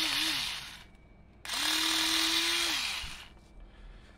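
Cordless electric rotary scissors running briefly twice, its small motor giving a steady hum with a hiss over it. The first run stops under a second in; the second starts about a second and a half in and winds down near the three-second mark.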